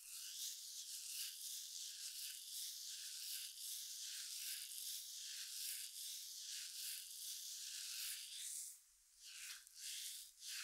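Hand kneading and rubbing oiled skin on the back of the neck: a soft, steady rubbing hiss that drops away briefly near the end, then returns in short strokes.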